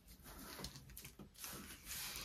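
Faint rustling and a few light taps of hands pressing a glued piece down onto a glassine bag.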